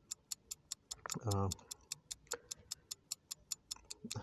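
Fast, even ticking of a timer sound effect laid under a rapid-fire question round, about six or seven ticks a second.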